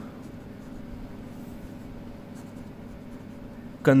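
Ballpoint pen writing on ruled notebook paper: faint scratching strokes over a low steady hum.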